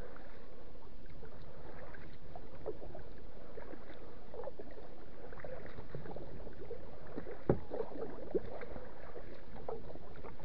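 Kayak paddling: water splashing and lapping against the hull with each paddle stroke, over a steady wash of water. A sharp knock about three-quarters of the way in, and a smaller one just after.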